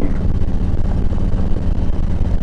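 Harley-Davidson Ultra Classic's V-twin engine running steadily at cruising speed, heard from the rider's seat with road and wind noise.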